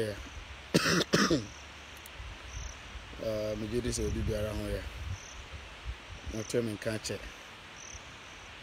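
A man coughs twice in quick succession about a second in, then his voice comes in short phrases, with crickets chirping faintly in the background.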